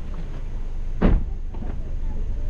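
Low steady rumble of a car rolling slowly, with a single sharp knock about a second in.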